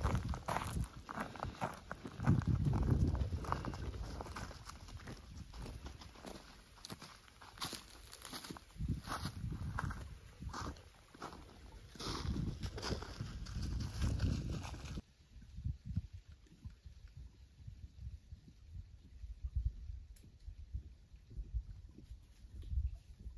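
Footsteps crunching over snow and gravel, with wind rumbling on the microphone. About two-thirds of the way through the sound drops suddenly to a much quieter, faint rustle.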